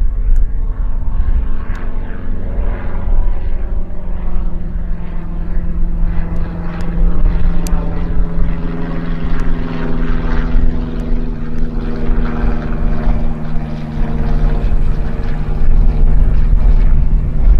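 High-wing single-engine light aircraft landing and rolling out along the runway, its propeller engine running at low power with a steady drone. A deep rumble sits underneath, and one engine note climbs slightly about halfway through.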